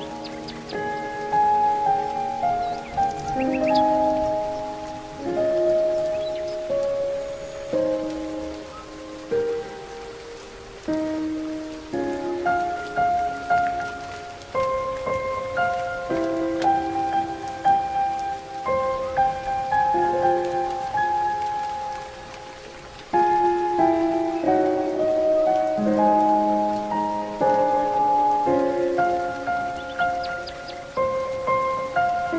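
Slow, gentle solo piano music: single notes and soft chords that ring and fade, over a soft, steady background of nature ambience with a few faint, brief high chirps.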